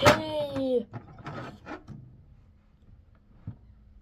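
A plastic wrestling action figure slammed onto a toy wrestling ring's mat with one sharp clack, while a voice gives a long call falling in pitch. A few light plastic clicks follow as the figures are handled, then only faint room tone.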